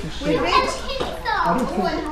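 Young children chattering and calling out over one another, mixed with adults' voices, in a room full of people.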